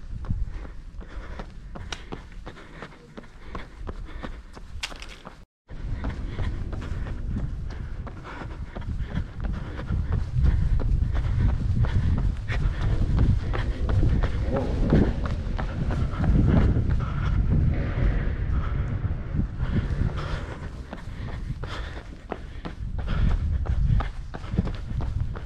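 A runner's footfalls on pavement and cobbles, heard close up over a steady low rumble that grows louder from about six seconds in. The sound drops out completely for a moment about five seconds in.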